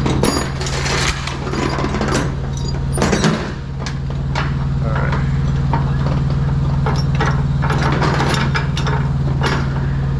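Steel tie-down chains clinking and clanking as they are handled and stowed on a flatbed trailer, busiest in the first few seconds and then in scattered clanks, over a steady low hum.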